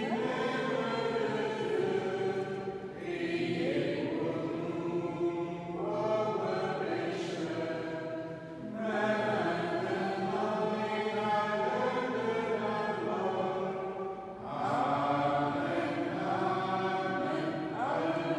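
A small congregation singing a hymn together in a church. The singing comes in long held phrases, with short breaks for breath about every five to six seconds.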